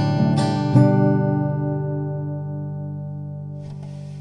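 Guitar strummed three times in the first second, then a closing chord left to ring out and slowly fade.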